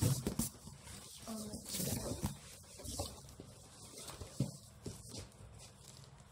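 Cardboard box flaps and paperback books being handled on a carpeted floor: rustling and scraping, with a few light knocks later on. A brief murmured vocal sound comes about a second and a half in.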